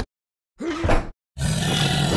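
Cartoon sound effects: a short call whose pitch bends up and down, then a dragon's fire breath, a loud noisy roar of about a second and a half that fades out.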